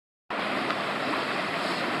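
Steady rushing of a flowing stream.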